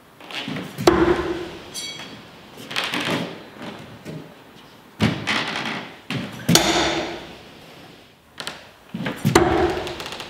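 Steel throwing knives striking a wooden log-round target, a series of sharp thuds, some followed by a brief ring, with shuffling steps on a wooden floor between throws.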